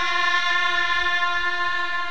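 A woman's voice holding one long, steady sung note, without drums.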